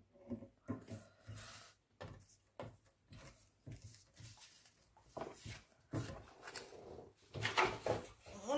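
Paper scraps rustling and sliding as they are gathered by hand and swept off a cutting mat, a run of irregular rustles and scrapes.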